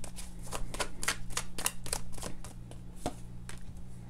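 Tarot cards shuffled and flicked by hand: a quick run of light card snaps that thins out after about two and a half seconds.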